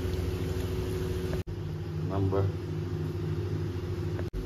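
Masala vada deep-frying in hot oil in an iron kadai: a steady sizzle over a constant low hum, broken by a sudden cut about one and a half seconds in.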